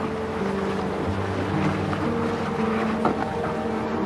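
Motorboat engine running as the boat pulls away, with water churning in its wake, under background music of long held notes.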